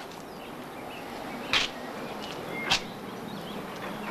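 Steady background hiss of an outdoor scene, with two short, sharp high sounds about a second apart.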